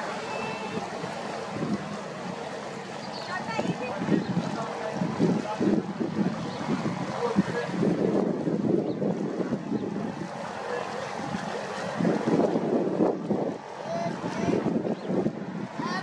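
Indistinct voices of people talking some way off, no words made out.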